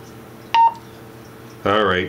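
Wouxun KG-816 handheld radio giving a single short, high keypad beep as a key is pressed, about half a second in.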